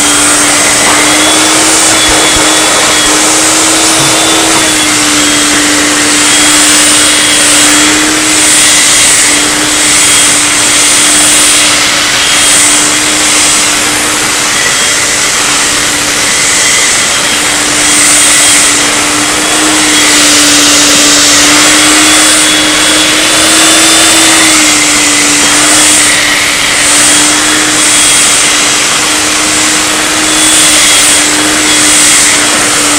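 Black & Decker Collector corded hand vacuum with a 3-amp motor running steadily, its pitch rising and dipping slightly now and then as it is moved about over the floor.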